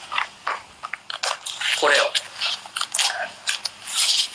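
Crinkling and crackling of packaging being handled: a quick, irregular run of small crackles and clicks.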